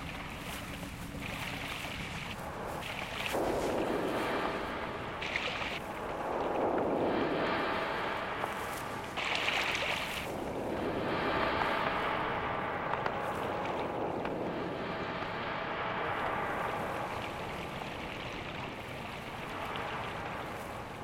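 Underwater whooshes and rushes of water, a documentary sound-effects track for Atlantic tarpon lunging through a school of small fish. A steady watery haze swells and fades every few seconds, with several short hissing rushes.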